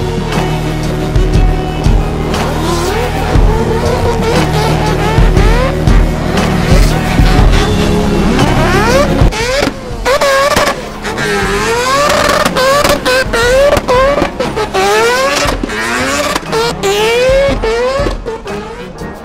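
Music with a racing car's engine laid over it. From about halfway, the engine's pitch climbs again and again in quick rising sweeps, each dropping back as the car accelerates hard through its gears.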